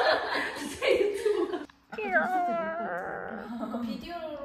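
Young women talking and laughing excitedly. The sound drops out briefly just before the two-second mark, then drawn-out voices slide down in pitch.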